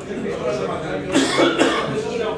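Talking in a meeting, broken by a person coughing twice a little past a second in.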